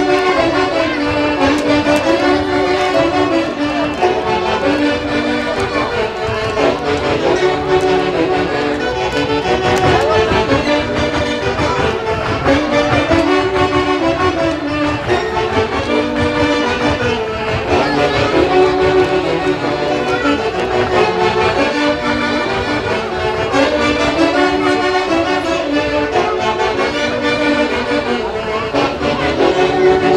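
A live Andean folk orchestra with saxophones plays a huaylarsh for dancers, a lively melody repeated in short phrases over a steady beat.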